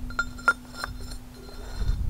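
A short length of steel pipe clinking against the steel pin and mounting ears of a backhoe bucket as it is slid on as a sleeve: a few light metallic clinks with a brief ring.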